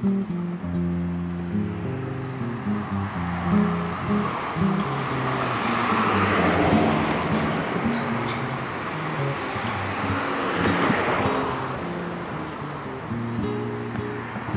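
Acoustic guitar music playing, with a rushing noise that swells up twice in the middle and fades again.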